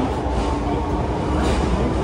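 Osaka Metro 66 series subway train heard from inside the carriage as it pulls out of the station: a steady low rumble of the motors and running gear.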